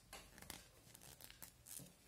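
Faint rustling and light clicks of hand knitting: needles and yarn being worked as seven stitches are knitted together. The sounds come in several short, scattered bursts.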